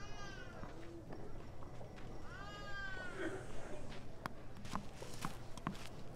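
Two drawn-out animal calls, about two seconds apart, each rising and then falling in pitch, followed by a few sharp taps.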